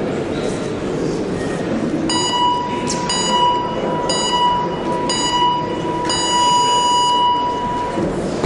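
Electronic boxing round timer sounding the end of the break: five beeps a second apart, the last held for about two seconds as the start signal for the round. A steady hall murmur underneath.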